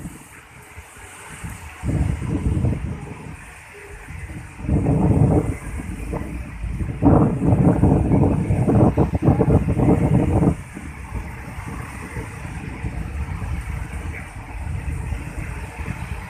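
Wind buffeting the microphone in loud gusts, about two seconds in, about five seconds in and again from about seven to ten seconds, over the steady wash of surf breaking on the beach.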